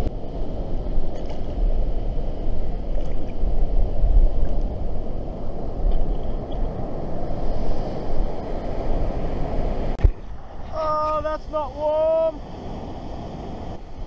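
Strong wind buffeting the camera microphone, a heavy, gusting low roar that goes on for about ten seconds. It stops abruptly with a click, and a short, wavering voice-like sound follows over a quieter background.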